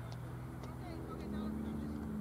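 A steady engine drone, holding one pitch, from a motor running somewhere near the field. In the second half a higher tone swells louder.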